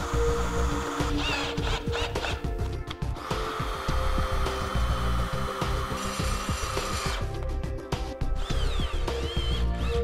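Power drill with a hex nut-driver socket whirring steadily for about four seconds in the middle, driving a hex-head fastener to mount a steel bracket.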